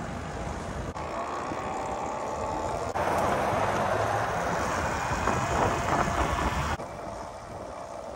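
An electric dirt bike being ridden, heard as wind on the microphone and tyre rumble with no engine note. It gets louder about three seconds in and drops off abruptly near the end.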